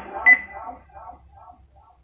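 A single short, high-pitched electronic beep with a brief ring about a quarter second in. After it come faint, choppy sounds that fade away.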